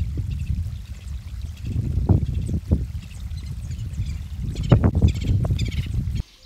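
Wind buffeting an unshielded phone microphone, a loud, uneven low rumble that surges about two seconds in and again near five seconds, with faint birdsong chirping above it.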